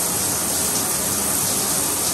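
Shower running cold water: a steady, even rush of spray.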